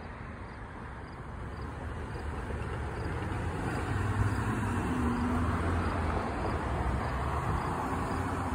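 Cars and a pickup truck driving over a railroad grade crossing: engine and tyre noise builds over the first few seconds and stays up as they pass.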